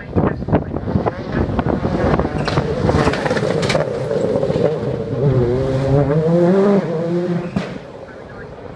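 Skoda Fabia WRC rally car's turbocharged four-cylinder engine approaching and passing close by at speed. Its pitch rises as it accelerates, dips at a gear change just before seven seconds, and climbs again, with a sharp bang near the end.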